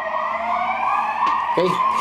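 Emergency vehicle siren sounding in the street, a continuous wail whose pitch slowly dips and rises again.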